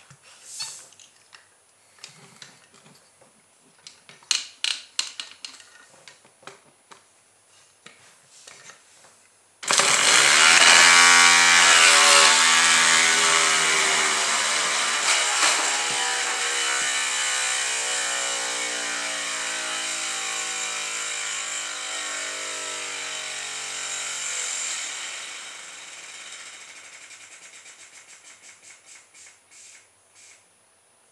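Toy compressed-air piston engine driving its propeller: a few faint clicks, then about ten seconds in it starts suddenly and runs fast and loud. Over the next fifteen seconds it slows and fades until separate puffs can be heard as the air in the bottle tank runs out, the epoxy-repaired bottle cap now holding pressure.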